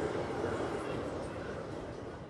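A moving train: a steady rumbling noise that slowly fades.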